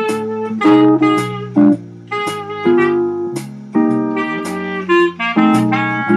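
Clarinet playing a blues melody in held and moving notes over a guitar accompaniment with plucked chords and bass notes.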